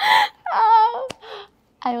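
A woman's drawn-out laughing groan, a short burst and then a long wavering "ahh", followed by a faint breathy sigh; she begins to speak near the end.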